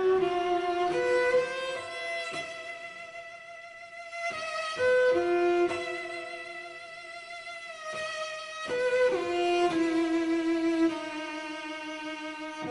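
Chamber string ensemble of violins, viola, cello and double bass playing slow, held bowed notes that swell and fade.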